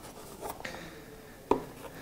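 A small paperboard box handled on a wooden tabletop with faint rubbing, then a single sharp tap about one and a half seconds in as it is set down.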